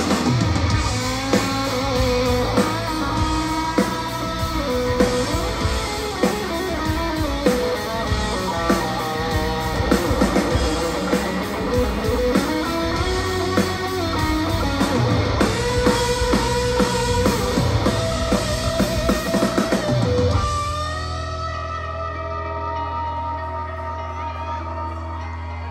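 Live rock band playing an instrumental break: an electric guitar lead line with bending notes over drums and bass. About twenty seconds in, the drums stop and the band drops to quieter held chords.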